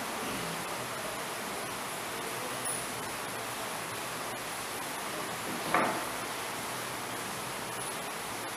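Steady background hiss of room noise, with one short scuff about six seconds in.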